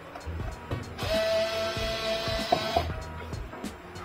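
Small cordless electric screwdriver running for about two seconds with a steady whine, backing out a circuit-board screw.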